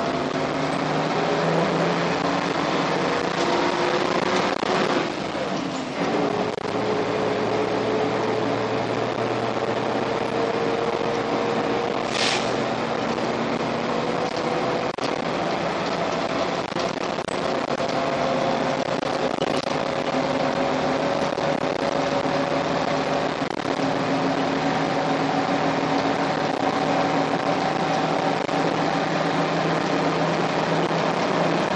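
Karosa B 732 city bus's diesel engine pulling hard uphill, heard from inside the bus: its pitch climbs slowly and steadily, with a brief break about six seconds in. A short hiss of air sounds about twelve seconds in.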